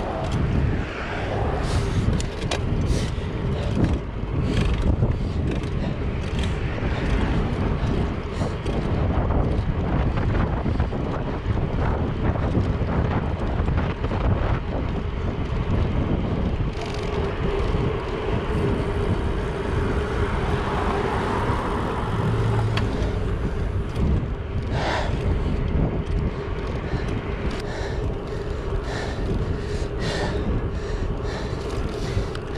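Wind buffeting an action camera's microphone as a bicycle is ridden fast on a paved road, with the tyres rolling on asphalt and occasional knocks from bumps. A steady hum joins in a little past the halfway point.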